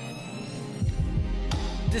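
Hip hop instrumental beat: a sparse intro, then a bit under a second in deep bass notes that slide in pitch come in. Drum hits join about halfway through.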